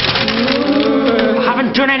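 A man shouting angrily in a long drawn-out cry, running into the words "I didn't" near the end.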